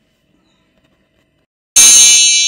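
Near silence, then near the end a sudden loud, bright metallic chime that rings on and slowly fades: the opening sting of a TV channel's logo ident.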